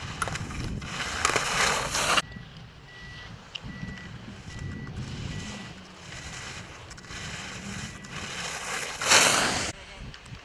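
Slalom skis scraping and hissing on firm snow as racers carve turns past the gates: a loud burst that cuts off suddenly about two seconds in and another short one near the end, with wind rumble on the microphone in between.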